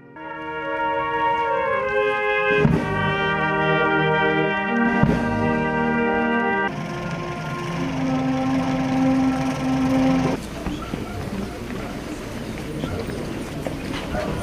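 Brass band playing slow, sustained chords as a funeral march. The music changes abruptly about six and a half and ten and a half seconds in, and is quieter in the last few seconds.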